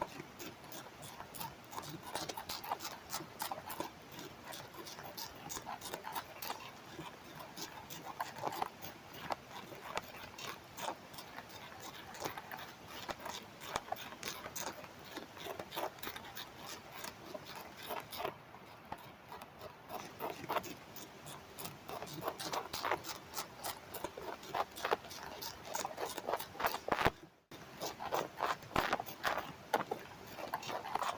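Tobacco hornworm (Manduca sexta) caterpillars chewing tobacco leaf, picked up by a microphone held against the leaf: a rapid, irregular run of crisp clicks and crunches as each bite cuts the leaf, cutting out for a moment near the end.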